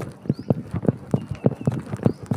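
Quick footsteps on paved ground: an even run of short clicks, about four or five a second.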